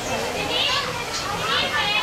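Young children's high-pitched voices, chattering and calling out over one another.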